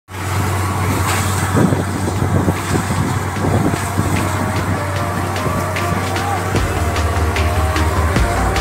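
Borewell drilling rig running steadily while water blows out of the bore, under background music whose beat ticks about twice a second and gets a heavier low beat near the end.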